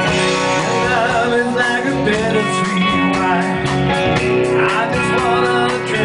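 Hard rock band playing live: an electric guitar plays bent, wavering lead notes over sustained chords, with bass and drums underneath.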